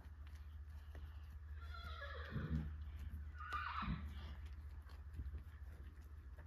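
A horse whinnying twice, each call falling in pitch, the first longer and louder, with scattered hoof clops over a steady low rumble.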